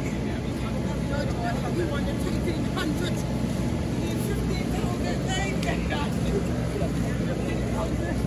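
A steady low rumble, with scattered voices of people talking and calling.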